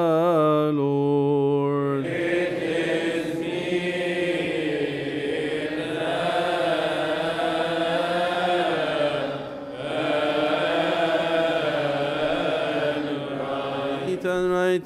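Coptic Orthodox liturgical chant. A single male voice holds a slow, drawn-out line for about two seconds, then many voices of the congregation take over together, chanting a slow melody with long held notes.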